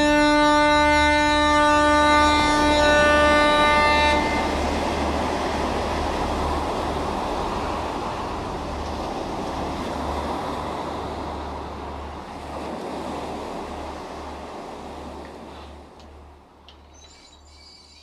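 Uilleann pipes holding a final chord over their drones, which stops about four seconds in. A breathy hiss follows and fades out slowly over about twelve seconds.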